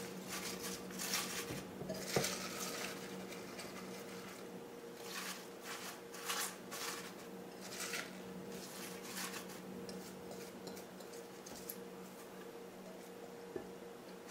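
Fresh basil leaves rustling as they are pushed by hand into a plastic food processor bowl, in irregular bursts, with a few light clicks and clinks from a glass bowl and the plastic parts; the processor's motor is off. A faint steady hum lies underneath.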